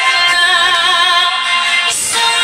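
A singer holding a long note with vibrato over instrumental backing music.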